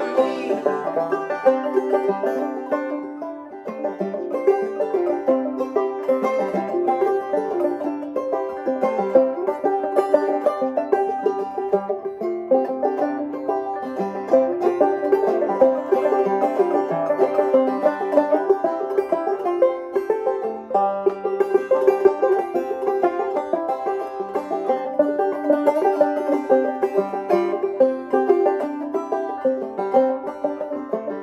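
Two open-back banjos playing an old-time instrumental passage together, one played clawhammer style and the other fingerpicked, in a steady run of plucked notes.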